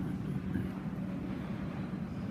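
A church congregation rising to its feet from wooden pews: a low, steady rumble of shuffling, rustling clothing and movement.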